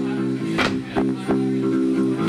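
Live band music: a steady droning chord held under a few drum and cymbal hits.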